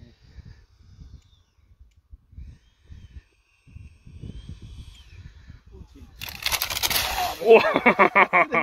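Small electric ducted-fan model jet flying low: a faint whine over a low rumble, then a sudden loud rushing noise about six seconds in.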